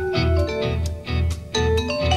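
Vibraphone struck with mallets in a live progressive rock performance, ringing notes in a quick line over a low pulse that comes about twice a second; the playing thins out briefly a little past the middle.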